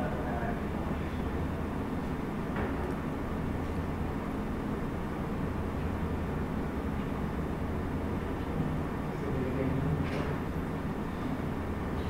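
Meeting-room background: a steady low hum, with faint murmured voices for a moment near the end.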